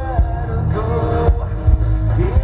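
Live hard rock band playing: a male voice singing over guitar and drums, recorded from the audience.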